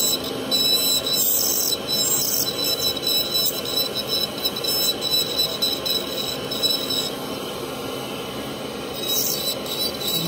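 Dental handpiece spinning a carbide bur and grinding down the teeth of a stone dental model: a steady high whine with a gritty grinding noise that swells and eases as the bur bites into the stone.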